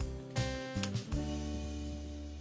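Background music: a few plucked guitar notes, each ringing on and slowly fading.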